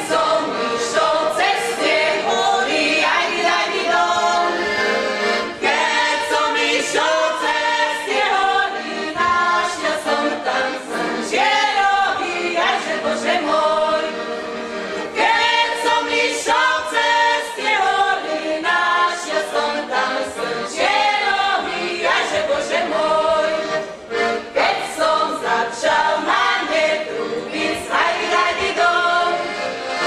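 A group of women from a Slovak folk ensemble singing a folk song together, phrase after phrase with short breaths between.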